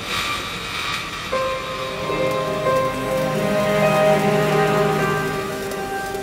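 String ensemble of violins, violas, cellos and double basses playing slow, held chords. A new note enters about a second in, and low notes swell in the middle and fade before the end.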